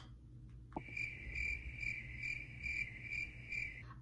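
Crickets chirping, a steady high trill that pulses about twice a second. It cuts in about a second in and stops abruptly just before speech resumes, in the way of an edited-in sound effect.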